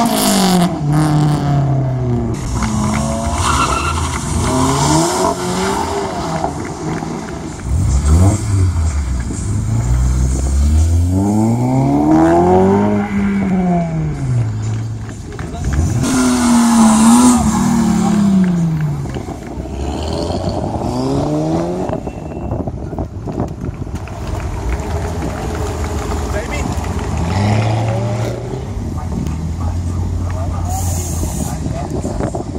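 Car engines revving hard, the pitch repeatedly rising and falling, with tyre squeal from a burnout around the middle. After about 20 seconds the engines settle into lower, steadier running.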